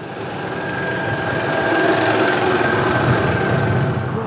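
A motor vehicle passing close: engine and road noise with a steady whine, growing louder over the first two seconds and then holding before cutting off abruptly.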